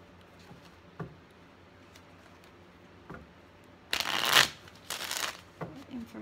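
A deck of tarot cards being shuffled: a couple of light taps, then two short, loud shuffling bursts about four and five seconds in.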